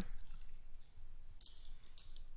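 A computer mouse clicking softly, a couple of short clicks in the second half, over quiet room tone.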